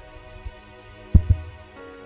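Background music of sustained chords under a pause in the preaching, with two low thumps in quick succession just over a second in, the loudest sounds here.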